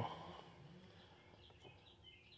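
Faint bird chirps, a few short high calls about a second in, over a near-silent background.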